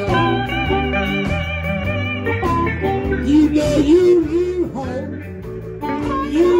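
Live electric blues band playing an instrumental passage: a harmonica holds a long wavering note for about two seconds, then electric guitar bends come to the fore over the steady backing of guitars and drums.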